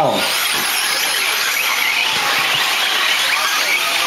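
Radio-controlled short course trucks racing on a dirt track: a dense, high-pitched whine of their small motors and drivetrains, with a thin wavering whine over the top in the first couple of seconds.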